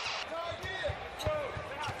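A basketball bouncing on the hardwood court a few times, with arena crowd noise and scattered voices behind it.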